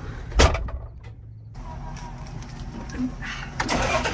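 John Deere tractor's diesel engine idling, heard from inside the cab, with one sharp knock about half a second in.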